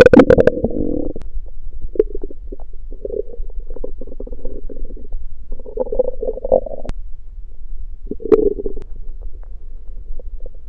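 A man's empty stomach growling and gurgling with hunger after fasting: a loud gurgle at the start, then a string of shorter rumbles, with another strong one near the end.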